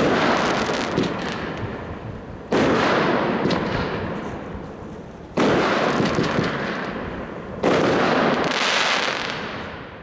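Lesli Hot Rod firework firing shots into the air: four sudden bangs about two to three seconds apart, each followed by a noisy tail that fades over two to three seconds, the last dying away at the end.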